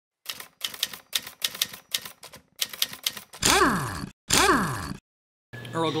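Typewriter typing sound effect: rapid clicks in short bunches for about three seconds. Then two loud whooshes, each sweeping down in pitch.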